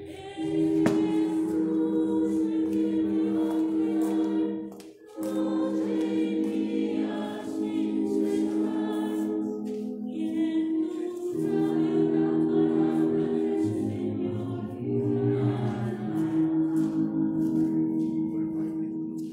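Music: a choir singing a slow hymn in long, held notes, with a brief break about five seconds in.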